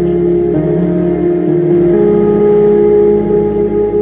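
Live electronic IDM music played from an Ableton Push: held synth chords over a sustained bass, with the notes shifting every second or so and no drum hits.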